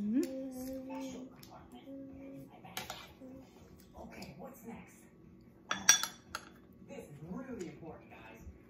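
Metal spoon tapping and scraping on a plate during a meal, with one sharp ringing clink about six seconds in.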